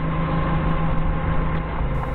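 Doosan 4.5-ton forklift's engine idling steadily, heard from the operator's seat.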